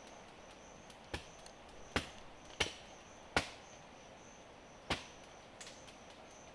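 A series of sharp knocks, about six strokes at uneven intervals, over a faint, steady, high buzz.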